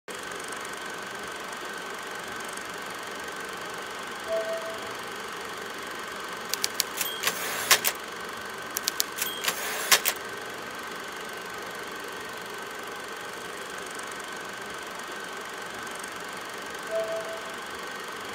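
A steady machine-like whir with hiss and a faint high whine throughout, broken by two quick runs of sharp clicks near the middle. A short tone sounds about four seconds in and again near the end.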